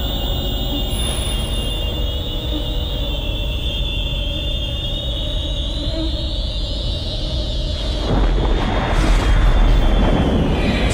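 Film sound design: a low rumbling drone under a sustained high ringing tone, then a sudden louder rushing blast about eight seconds in that builds to the loudest point near the end, as a bolt of light strikes.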